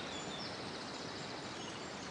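Steady outdoor background hiss in a pause between speech, with a faint high trill in the first second.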